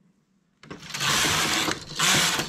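Domestic knitting machine's carriage pushed across the needle bed to knit a row: a continuous sliding rattle that starts about half a second in.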